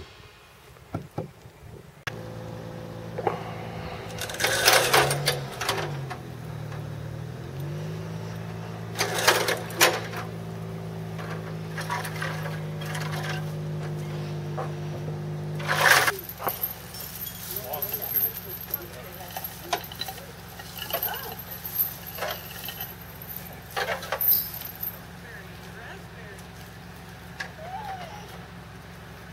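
A small engine running steadily, its pitch sagging and then recovering once, with a few short knocks and voices over it. About two-thirds of the way through it stops abruptly, leaving a fainter steady hum with a thin high whine.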